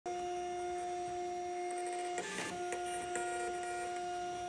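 Dymo LabelWriter 4XL thermal label printer feeding out a shipping label. Its feed motor gives a steady whine on two notes, broken briefly a little over two seconds in by a short burst of noise and a couple of clicks.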